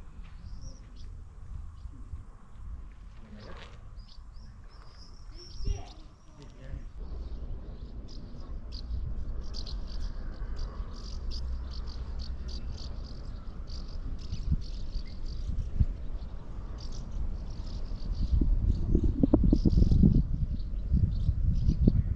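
Small birds chirping in many short, high calls, thickest through the second half, over a low rumble of wind on the microphone that swells loudly near the end.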